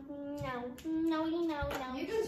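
A child singing a simple wordless tune in long held notes, the second note higher than the first and sliding down near the end.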